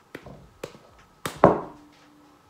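A handful of sharp knocks at an uneven pace, the last and loudest about one and a half seconds in: a fist striking the top of the head as a repeated motor tic.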